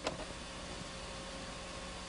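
A brief click, then a steady faint hiss with a low hum: the background noise of the recording between narration lines.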